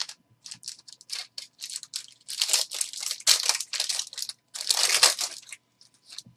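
Foil wrapper of a trading card pack crinkling and tearing as it is opened by hand, in a run of crackly bursts that grows thickest and loudest through the middle.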